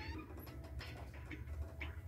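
A door being eased open in a quiet room: a few soft clicks from the knob and latch, and a brief faint squeak near the end, over a low hum.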